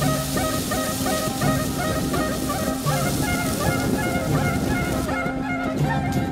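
Folk music with a nasal, reedy melody over a steady held drone note, repeating a short ornamented phrase. A bonfire crackles, heard as sharp ticks near the end.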